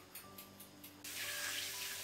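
A few light taps over faint background music, then about a second in a steady sizzle starts: cumin seeds, bay leaves and sliced ginger frying in hot oil in a pan.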